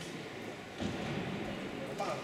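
Faint, indistinct voices over the steady hum of an ice rink hall, a little louder just under a second in.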